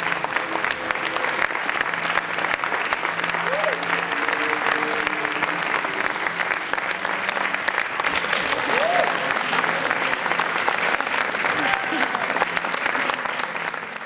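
Theatre audience applauding: dense, steady clapping throughout, with a few voices briefly rising above it.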